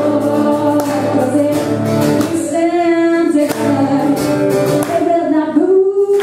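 Two women singing a duet over a strummed acoustic guitar, with a long held note about halfway through.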